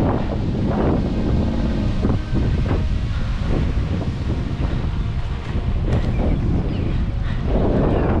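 Wind buffeting the microphone of a camera moving at cycling speed, a steady low rumble.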